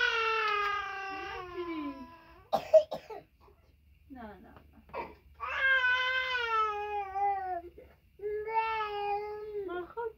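A young child crying in long, high-pitched wails, three drawn-out cries that each fall in pitch. A single sharp click comes about three seconds in.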